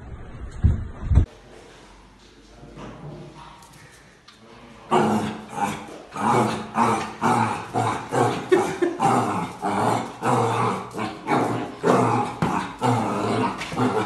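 A puppy barking at its own reflection in a mirror, in short repeated barks about two a second that start about five seconds in. Before that come a couple of low thumps in the first second.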